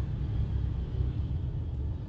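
Steady low rumble of a car heard from inside the cabin, engine and road noise with no sharp events.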